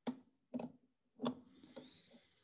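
Three sharp metallic clicks about half a second apart as a 17 mm wrench works the sweep-angle nut on a wiper motor, loosening it.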